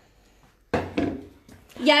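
A woman's voice speaking in short bursts after a brief quiet pause; it starts abruptly a little under a second in.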